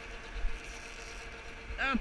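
Tractor engine running steadily with a constant faint tone over a low rumble; a man's voice calls out near the end.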